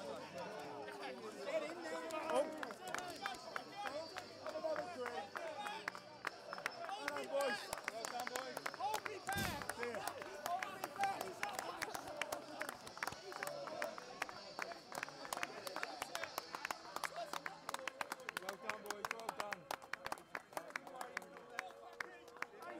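Footballers shouting and cheering together in celebration close to the microphone, with hand claps joining in from about eight seconds and growing into fast, dense clapping. A single thump comes about nine seconds in.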